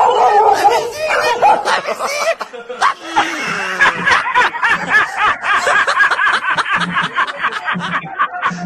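People laughing, several voices overlapping, most densely in the second half.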